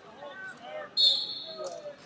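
Background voices in a large hall, cut about a second in by one loud, sharp, high-pitched squeal that holds for about half a second.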